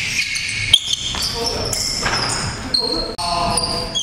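A basketball bouncing on a gymnasium floor as players dribble, with a sharp bounce a little under a second in. Players' voices carry through the hall.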